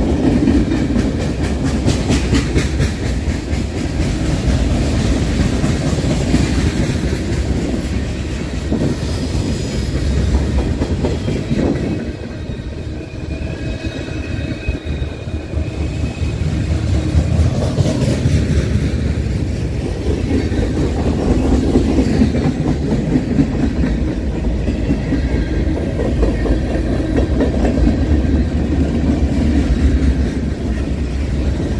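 Freight cars of a long mixed freight train, boxcars and gondolas, rolling past close by: a steady loud rumble of steel wheels on the rails with the clickety-clack of wheels over rail joints, easing a little about halfway through.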